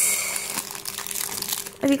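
Packaging wrapper of a toy blind pack crinkling and rustling as it is handled and pulled open, loudest in the first half-second, then small crackles throughout.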